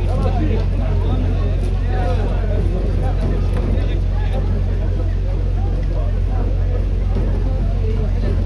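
A crowd of men talking and shouting over one another while they force a metal gate, over a steady low rumble.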